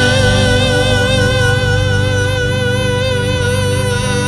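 A male singer holds one long note with vibrato into a microphone, over instrumental accompaniment with a steady beat.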